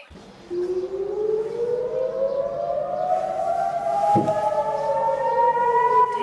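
Air raid siren wailing, several siren tones overlapping and slowly gliding up and down in pitch, starting about half a second in: a rocket-attack warning. A brief low knock sounds under it near the four-second mark.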